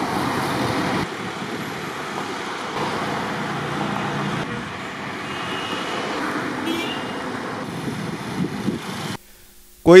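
Road traffic on a two-lane highway: cars and motorbikes passing, heard as a steady rushing noise that cuts off suddenly about nine seconds in.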